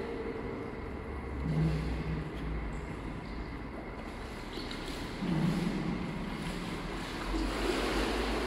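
Steady background noise with a low rumble and no speech, with two faint brief hums about a second and a half in and about five seconds in.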